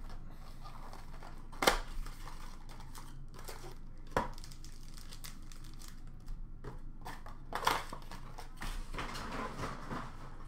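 Hockey card packaging being handled: a cardboard blaster box and foil card packs rustling and crinkling in the hands, with three sharp knocks about two, four and eight seconds in, and a longer crinkle near the end.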